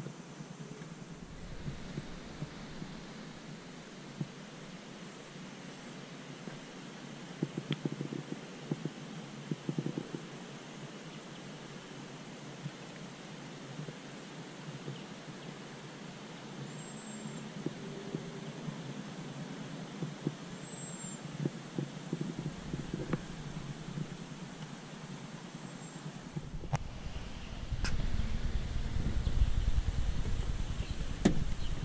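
Steady outdoor background hiss with scattered light clicks and knocks. A low rumble comes in near the end and grows louder.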